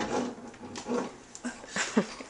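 Knocks and bumps of a plastic wagon as an adult squeezes into it, with a few brief vocal sounds among them.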